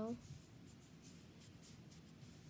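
A boy's voice trails off at the end of a word, then comes soft, faint scratching and rubbing, a few light scrapes.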